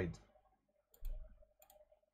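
A few computer mouse clicks: one about a second in, then a couple more shortly after.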